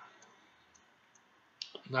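A pause in a man's speech: near silence with a few faint clicks, then a sharper click just before his voice resumes near the end.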